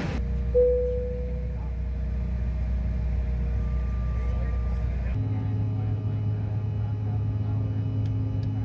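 Steady drone of an airliner's engines heard inside the passenger cabin, with a single chime-like tone about half a second in that fades away. About five seconds in the drone switches abruptly to a different, steady hum of the jet climbing out.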